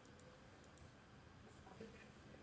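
Near silence with a few faint clicks of a computer mouse button.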